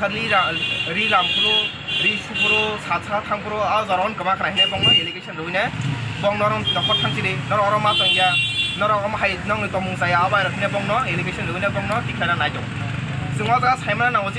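A man talking over roadside traffic, with several short high vehicle horn toots and the low running of passing engines, which grows in the second half.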